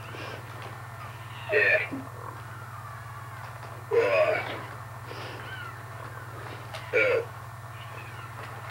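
Toy humanoid robot giving three short electronic grunting calls, about one every two and a half seconds, while its arms move. A steady low hum runs underneath.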